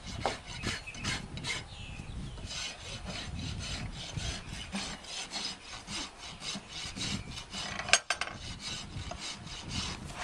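A farrier's hoof rasp filing a horse's hoof in quick, repeated scraping strokes, a few each second. Near the end there is one sharp knock.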